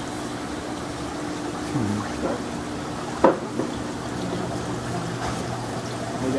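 Water trickling and splashing through the filtration of saltwater aquarium tanks, over a steady low hum. A single sharp knock comes about three seconds in.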